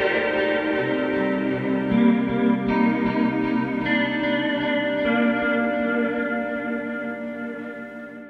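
Electric guitar played through a Line 6 Helix LT ambient patch: slow, sustained notes washed in delay, reverb and chorus, overlapping into a continuous pad. New notes enter every second or so, and the sound dies away near the end.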